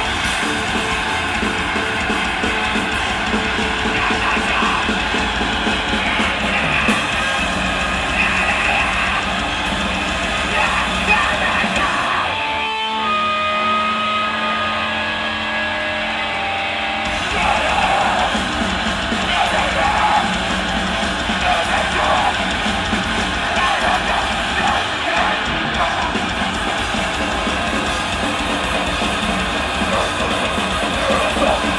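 A live heavy rock band playing loud: distorted electric guitar and drum kit. About twelve seconds in the drums stop and held guitar notes ring on their own for about five seconds, then the full band comes back in.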